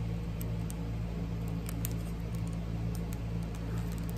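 Faint scattered clicks and crinkles of a thin clear plastic packet being fingered and pulled at, over a steady low hum.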